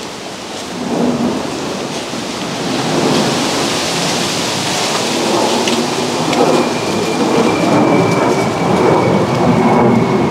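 Jet aircraft passing overhead: a rumble that builds steadily, with a thin high engine whine coming in about six and a half seconds in and slowly falling in pitch.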